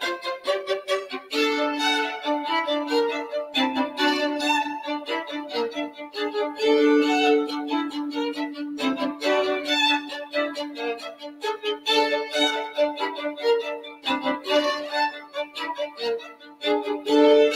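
Two violins playing a classical duet, a busy passage of many short notes with the two parts sounding together.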